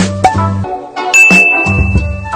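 A subscribe-button animation sound effect over background music with a beat. About a second in there is a click, then a single high, steady ding that rings on past the end.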